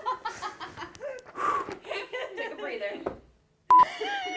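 Indistinct, untranscribed talking for about three seconds, then, after a short gap, a brief loud electronic beep of one steady tone near the end.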